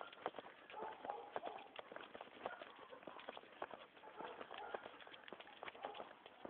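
Footsteps on brick paving as a person walks a dog on a leash: quick, irregular clicks and scuffs, several a second.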